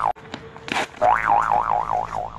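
Cartoon 'boing' spring sound effect: a wobbly tone that wavers up and down about four times in under a second. It starts about a second in, after a quieter moment with a click and a short swish.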